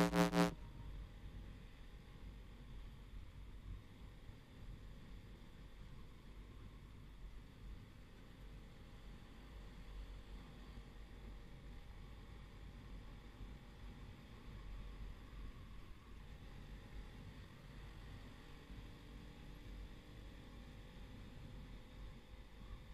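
Faint, steady low rumble of a motorcycle ride picked up by a handlebar-mounted action camera: wind and road noise with engine drone. Background music cuts off in the first half second.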